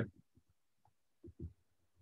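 Quiet room tone with two faint, dull low thumps in quick succession a little past a second in.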